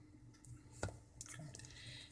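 Faint handling of a plastic tablet holder against a PVC pipe bracket, with one sharp click a little under a second in and a few softer clicks after it.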